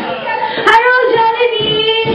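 A young child's voice singing a long held high note, with a sharp click about two-thirds of a second in.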